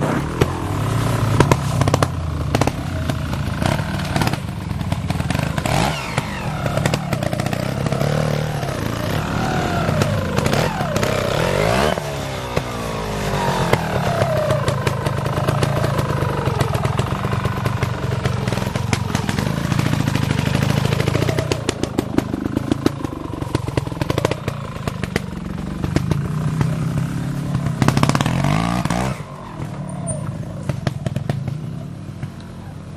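Trial motorcycle engine revving up and down in repeated throttle bursts as it works through a section, with scattered knocks and clatter; the engine dies away near the end.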